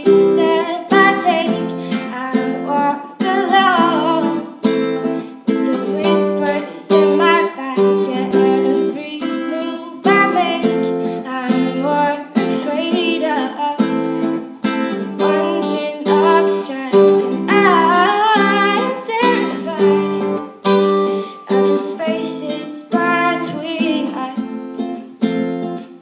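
Woman singing with a strummed steel-string acoustic guitar accompanying her, the guitar chords steady throughout and the voice coming and going in sung phrases.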